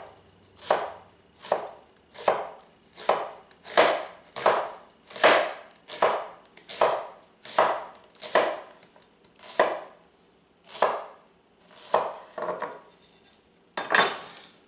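Chef's knife slicing a red onion into thin half-moons on a wooden cutting board: a steady run of separate cuts, about one every three-quarters of a second, each ending on the board, with a short pause about two-thirds of the way through.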